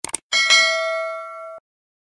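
Mouse-click sound effect, a quick double click, followed by a bright notification-bell ding that rings for about a second and cuts off suddenly.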